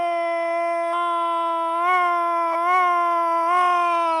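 A radio football commentator's long held goal shout, one sustained "gooool" at a near-steady pitch with slight wavers, calling a goal just scored.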